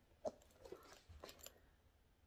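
Near silence: room tone with a few faint, short clicks, the first and clearest about a quarter second in.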